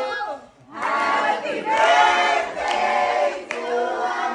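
A small group of people singing together in long drawn-out notes, several voices at once, with a short break about half a second in.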